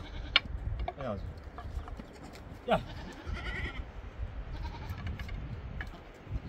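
Goats bleating a few short times: one call about a second in, another near the middle, then a wavering one just after. There are a few sharp knocks and a steady low rumble underneath.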